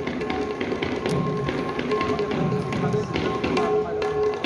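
Manipuri pung drums and hand cymbals played in rhythm by a Nupi Pala ensemble. Crisp cymbal clicks come thick and fast over deep drum strokes about once a second, with steady ringing tones held underneath.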